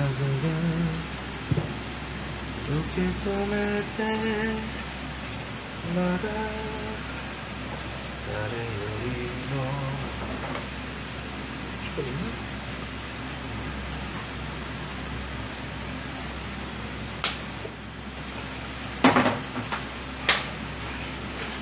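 A man humming a tune in short phrases for the first half, over a steady low kitchen hum. A few sharp clicks or knocks near the end.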